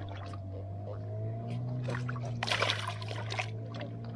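Water splashing as a hooked river catfish thrashes in the shallows at the bank's edge, with one louder splash about two and a half seconds in. A steady low hum runs underneath.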